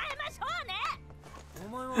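Anime dialogue, a character exclaiming, over background music, with a man's laugh starting right at the end.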